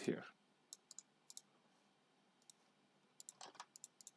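Faint, scattered clicks of a computer mouse and keyboard: a few single clicks in the first second and a half, then a quick cluster near the end.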